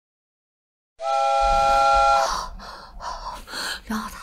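A loud, steady electronic chord of several held notes starts about a second in and stops about a second later, in the manner of a dramatic sound-effect sting. It is followed by a woman's quick, breathy gasps and a faint whisper.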